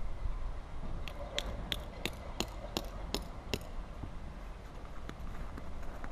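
A quick run of about eight sharp, evenly spaced taps, roughly three a second, starting about a second in and stopping after two and a half seconds, over a steady rumble of wind on the microphone.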